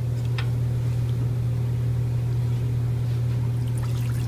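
A steady low hum. Near the end, water begins trickling into a stainless steel saucepan as it is poured from a plastic beaker.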